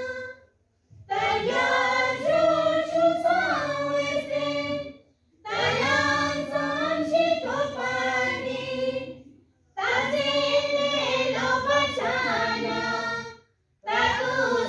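A group of school students, boys and girls, singing together in three phrases of a few seconds each, with brief pauses between them.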